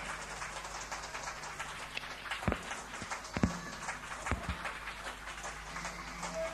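Low room noise in a gap between songs of a live rock set, with a few scattered knocks partway through.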